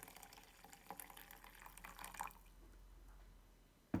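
Hot water poured from a kettle into a glass French press onto coffee grounds: a faint trickle with small splashes that stops a little over two seconds in. A short knock follows near the end.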